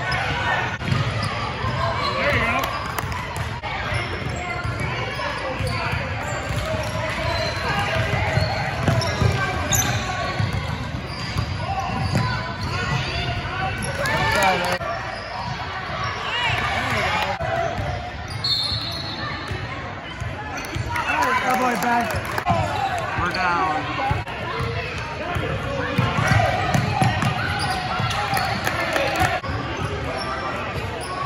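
A basketball dribbling and bouncing on a hardwood gym floor, with voices calling out throughout in an echoing hall.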